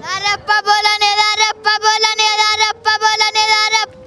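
A child singing unaccompanied in a high voice: three long held phrases with brief breaths between them.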